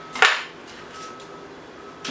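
A single short, sharp clack of camera gear being handled on a wooden tabletop, a lens or lens cap knocked or set down, about a quarter second in.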